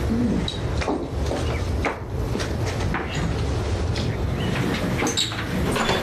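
Steady low rumble with a few soft knocks and clicks: someone crossing a room and opening a front door.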